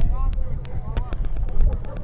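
Faint distant voices calling, over a steady low rumble, with many scattered sharp ticks.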